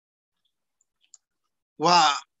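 Near silence, with a few faint clicks about a second in; a man's voice starts near the end.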